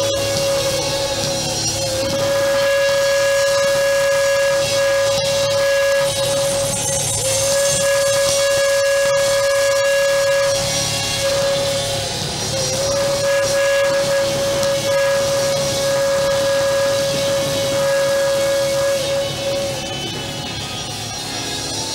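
A shofar (curved ram's horn) blown in about four long held blasts, each a steady note that swoops up slightly as it starts, with short breaks between. The longest blast lasts about seven seconds, near the end.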